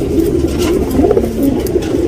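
Domestic pigeons cooing: a low, continuous warbling coo that wavers in pitch throughout.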